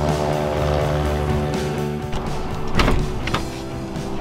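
Small single-engine propeller plane's engine running steadily as it taxis, under background music. A short loud whoosh comes about three quarters of the way through.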